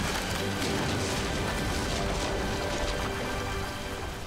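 Cartoon sound effect of a wooden house collapsing into rubble: a continuous crash of falling boards and debris that eases off near the end, over background music.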